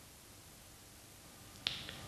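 Near-silent room tone, broken about a second and a half in by a single sharp click.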